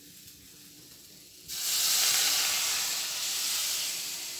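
Water poured into a hot pan of fried spice paste, yam and potato. A faint sizzle comes first; about one and a half seconds in, a sudden loud steam hiss rises as the water hits the hot oil, then slowly eases off.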